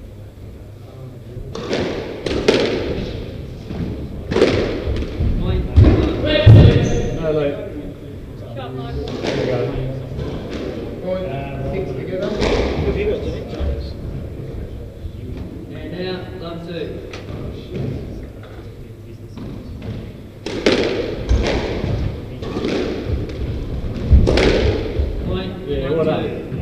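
Squash rally: the ball is struck by racquets and thuds off the court walls again and again at an uneven pace, echoing in the court.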